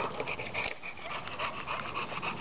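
American Staffordshire terrier panting while it takes up a stick, a quick run of short breaths.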